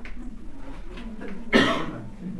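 A single loud cough about one and a half seconds in, over faint background sound in the room.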